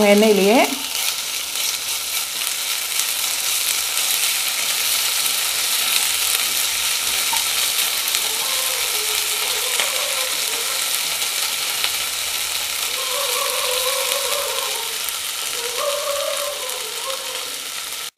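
Chopped onions, curry leaves and ginger-garlic paste sizzling steadily in oil in a non-stick wok, stirred and scraped with a wooden spatula. They are being sautéed until the raw smell of the ginger-garlic paste goes.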